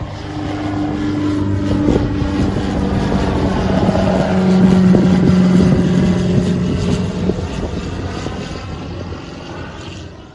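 Single-engine propeller light aircraft flying past overhead: its engine and propeller drone grows louder to a peak about halfway through, then fades as it flies away.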